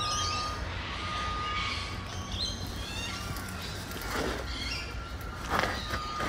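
Birds chirping and calling in an outdoor enclosure, with a faint steady high tone in the background. A few louder, short sounds come near the end.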